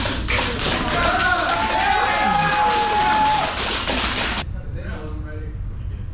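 TASER energy weapon discharging into a cadet, a rapid, even clicking crackle, with people shouting and laughing over it; it cuts off suddenly about four and a half seconds in, leaving faint voices.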